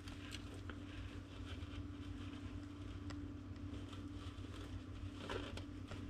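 Faint rustling of a cloth bag being held and shaken open, with a few light scattered clicks, over a steady low hum.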